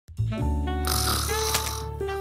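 Light background music with a comedic snoring sound effect. The music starts right away, and a raspy snore joins a little under a second in.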